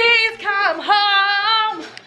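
High voices singing a drawn-out 'Christmas!' in two long held notes with vibrato. The second note runs from about a second in until near the end.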